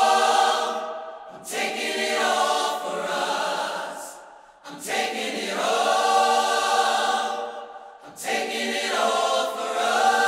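Isolated choir stem of a song: a large choir holding long sung chords in three swelling phrases, each breaking off briefly before the next. The choir voices play on their own.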